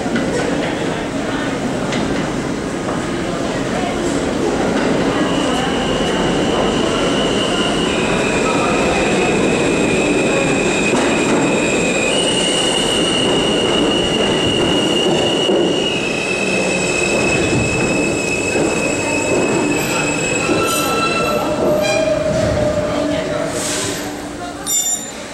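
Kawasaki R160B New York City subway train pulling into the station and braking to a stop: a steady rumble of wheels and running gear, with high-pitched wheel squeal that shifts pitch several times from about five seconds in until the train nears a stop. A short burst of noise comes just before the end.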